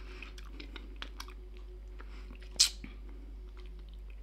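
Mouth sounds of sucking and chewing a hard salty-liquorice candy wheel: faint scattered wet clicks, with one sharp louder click about two and a half seconds in.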